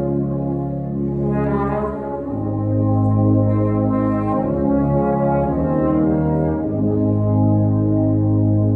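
Wind band playing sustained chords, with the brass to the fore. The bass notes shift about two seconds in and again near seven seconds.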